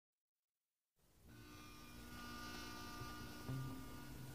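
Silence for about a second, then the faint hiss and steady electrical hum of a recording's lead-in, growing slightly louder, with a couple of soft low knocks near the end.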